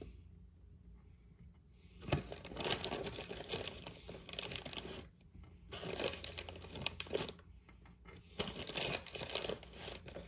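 A plastic bag of Sour Patch Kids candy crinkling as a hand digs pieces out of it, in three spells of rustling, the first starting about two seconds in.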